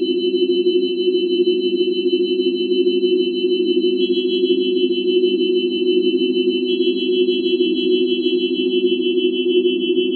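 Live electronic drone music played from a laptop and touchscreen tablet: a dense, steady low drone with several thin, high sine tones held above it. New high tones join about four seconds and seven seconds in, and the highest tone fades out near the end.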